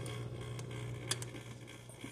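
Marineland Emperor 400 hang-on-back aquarium filter running with a steady low hum. A click comes about a second in, and the hum then dies away as the filter is unplugged.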